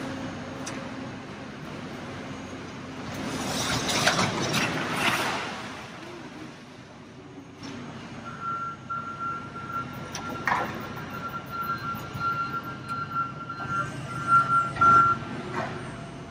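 Trash sliding out of a tipped roll-off dumpster, a loud rush of falling debris about three to five seconds in, over a low steady hum. From about eight seconds in, a high electronic beep tone sounds steadily until near the end.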